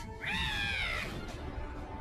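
A shrill, wavering cry from an anime character, under a second long near the start, with soundtrack music beneath it.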